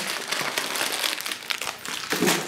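Plastic packaging crinkling and rustling in irregular crackles as it is handled.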